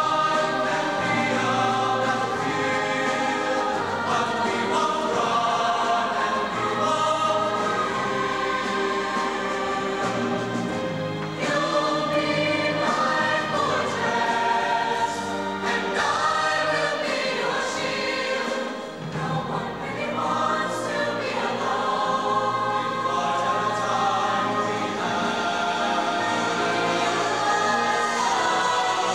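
High school show choir of mixed voices singing in harmony, with a brief dip in volume about nineteen seconds in.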